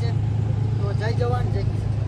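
Diesel tractor engine idling with a steady low drone.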